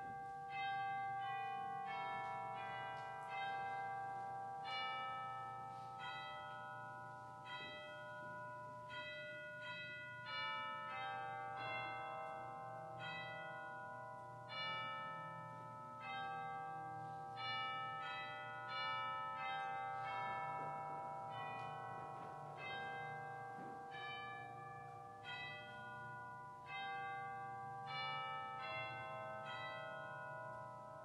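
Church bells ringing: a steady run of struck notes at different pitches, about two a second, each dying away slowly and overlapping the next.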